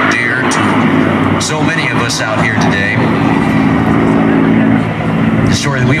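Merlin V-12 engine of a P-51 Mustang in flight, a steady low drone.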